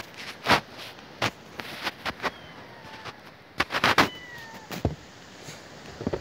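Kittens mewing faintly, a few thin high calls that fall in pitch. Loud, sharp crunches in snow come in clusters, the strongest a little after halfway.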